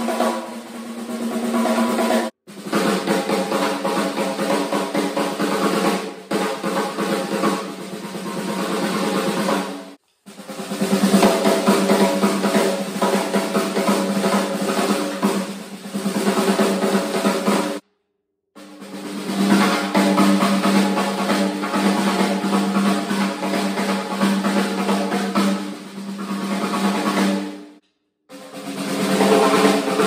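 Snare drums fitted with Remo Emperor X heads and Canopus wide snare wires, played in fast rolls and strokes. Each snare rings at its own pitch. The sound cuts off abruptly about every eight seconds, and the next snare comes in, some takes swelling in loudness.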